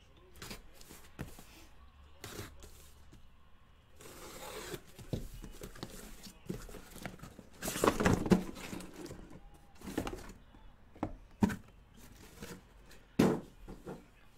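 A taped cardboard shipping case being slit open with a pocket knife and unpacked: tape and cardboard rustling, a short hiss about four seconds in, a louder burst of cardboard scraping about eight seconds in, and several knocks as boxes are set down near the end.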